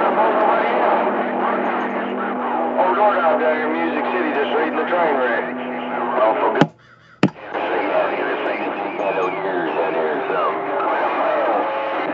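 CB radio receiver on channel 28 playing garbled, overlapping voices of distant stations through static, with a steady low tone under them for the first half. About seven seconds in, the signal drops out for under a second, with a click as it cuts off and another as it comes back.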